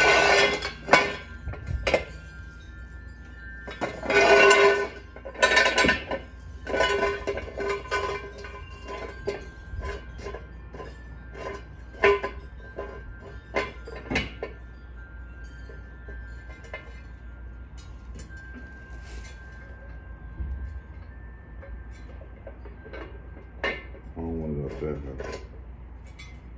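Metal clinking and clattering in irregular bursts, loudest in the first six seconds and sparser later on, from tools and loose chrome wheel parts being handled while taking a car's wheel off.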